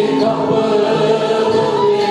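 A choir singing a Turkish folk hymn (ilahi) together in long held notes.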